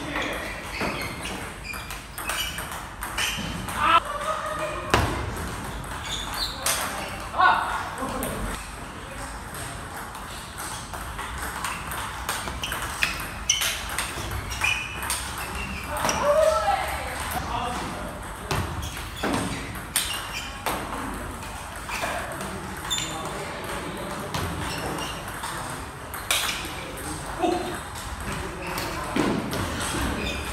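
Table tennis ball being hit back and forth with rubber paddles and bouncing on the table in rallies: a quick run of sharp ticks, in a reverberant hall. People's voices come in at times.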